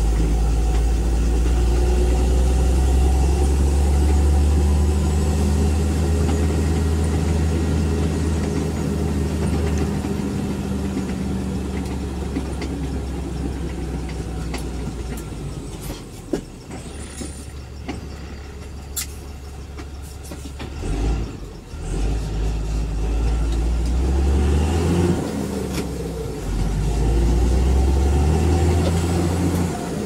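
A road vehicle's engine heard from inside the cab while driving. It runs steadily, eases off and quietens for several seconds in the middle, then rises in pitch twice near the end as the vehicle speeds up again.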